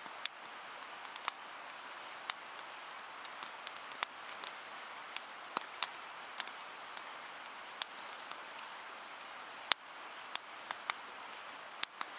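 A river running steadily, with about twenty sharp, irregular pops or ticks scattered over the rushing.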